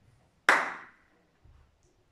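A single sharp hand clap about half a second in, with a brief ringing tail from the room.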